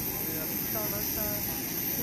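Jet engines on parked Boeing 737s that have just been started, a steady hiss with a faint high whine. Faint voices can be heard in the background.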